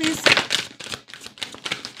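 A tarot deck being shuffled by hand: a rapid, uneven run of papery card clicks and flicks.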